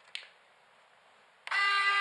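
A single click near the start, then about a second and a half in a modified RC servo starts driving its lead screw with a sudden, steady, high gear whine made of many even tones. The servo is running at its top speed.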